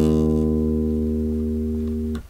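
A five-string electric bass sounds a single E-flat on the D string, held and slowly fading.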